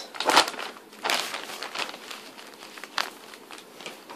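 Wrapping paper rustling and crinkling under the hands as it is pressed and folded around a flat gift, with a few short louder crinkles near the start, about a second in and about three seconds in.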